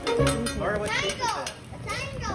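High-pitched voices calling out in short rising and falling cries, over faint background music.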